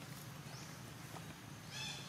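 An animal's high-pitched call with several overtones starts near the end, the loudest sound here, after a faint rising chirp about halfway through, over a steady low hum.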